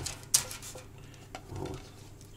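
Bread slices being handled between a ceramic plate and a parchment-lined metal baking tray: one sharp knock about a third of a second in, then a few lighter knocks and rustles.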